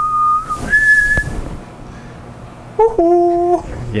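A person whistling two short held notes, the second higher than the first, followed near the end by a short held voiced note.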